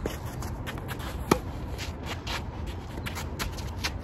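Tennis rally: one sharp racket-on-ball hit with a brief ringing ping about a second and a quarter in. Lighter scuffs and taps of players' footsteps on the court come before and after it.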